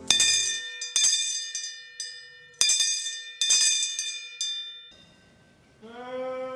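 A handbell rung in about eight irregular strokes, each ringing on with a bright metallic tone, as the call to morning prayer. The ringing stops about five seconds in.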